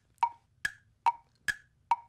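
Tick-tock clock sound effect: short wood-block-like clicks alternating high and low, a little over two a second, filling a pause left for thinking.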